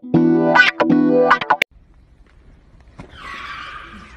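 Intro jingle music with guitar-like chords, cutting off suddenly about one and a half seconds in. After a quiet gap, a click near the end is followed by a steady hiss.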